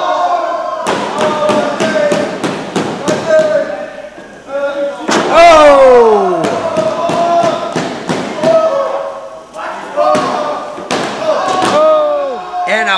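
Wrestlers' bodies slamming and thudding on the ring canvas, a quick string of sharp hits, with voices shouting over them. A long falling yell comes about five seconds in.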